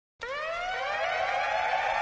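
A siren-like tone with several overtones starts about a quarter second in, rises in pitch, then levels off.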